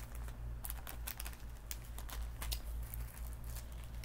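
Thin plastic packaging crinkling as it is handled, in quick irregular crackles and clicks.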